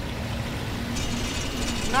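Opal processing plant machinery running steadily: the low drone of its air-cooled generator engine, with higher-pitched mechanical noise from the conveyor joining about a second in.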